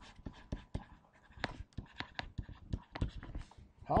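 Stylus on a tablet-PC screen while handwriting words: a run of light, irregular clicks and taps with faint scratching between strokes.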